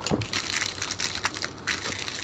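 Crackling and crinkling of plastic packaging being handled and pulled open around a Blu-ray disc, in a quick irregular run of small cracks.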